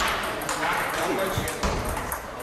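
Table tennis balls clicking off bats and tables in quick, irregular succession from several rallies at once, with voices in the hall behind.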